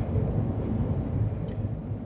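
A steady low rumble of background noise, with a faint click about one and a half seconds in.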